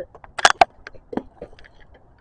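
A few sharp clicks and knocks: a loud cluster about half a second in, then a single knock a little after a second, with fainter ticks between.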